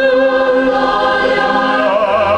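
Choir singing sustained notes with vibrato, accompanied by a chamber orchestra; the harmony shifts to new notes near the end.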